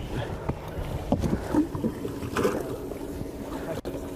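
Wind buffeting the microphone on a bass boat's open deck, with scattered knocks and handling noises as a fish is handled at the live well, and a steady low hum setting in near the end.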